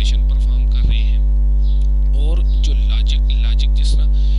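Loud, steady electrical mains hum at about 50 Hz, with a ladder of even overtones above it. It is the kind of hum a microphone or sound card picks up from a ground loop or a nearby mains supply.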